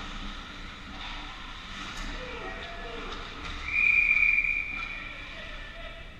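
Ice hockey referee's whistle blown once, a single steady high blast of about a second and a half starting about three and a half seconds in, stopping play at the goal.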